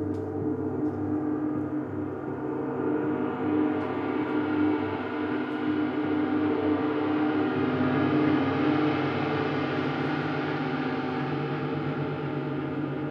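Large gongs ringing in a dense, sustained wash of overlapping tones. The bright upper shimmer swells over the first few seconds and then holds.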